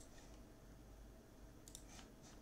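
Faint clicking of a computer keyboard, a quick cluster at the start and another near the end, over a faint low hum.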